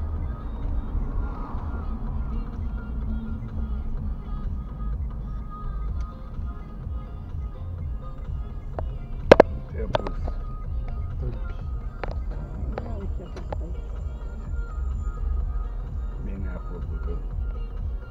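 Car cabin noise while driving: a steady low rumble from the engine and road, with music playing quietly. A sharp, loud knock about nine seconds in, followed by a few softer clicks over the next few seconds.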